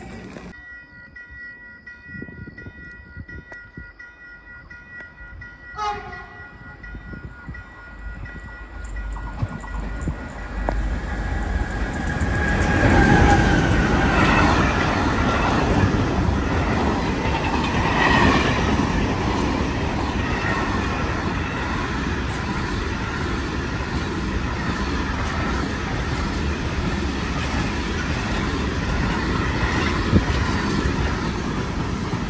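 Container freight train passing close by, its wagons rumbling and clattering over the rails, with a horn sounding about 13 seconds in and again around 18 seconds. Before it arrives, a quieter stretch of faint steady tones.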